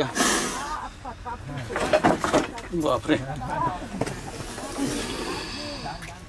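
Indistinct voices of people talking and calling out, with a short noisy burst right at the start.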